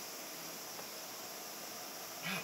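Steady, even whir of cooling fans in racks of server and broadcast equipment.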